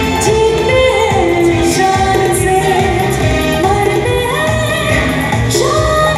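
Live Indian film-style song: a woman singing a melody with long held notes, backed by a band with keyboards and a steady beat through the PA.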